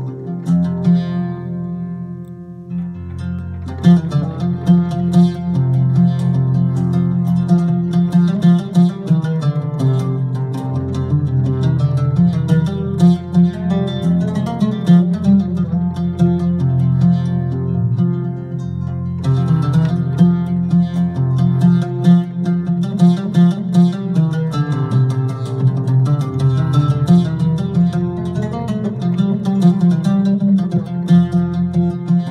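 Oud voice played on an electronic arranger keyboard: a free, improvised melody of quick plucked notes in maqam rast, over long held low notes. It opens quietly, then grows busier and louder about four seconds in.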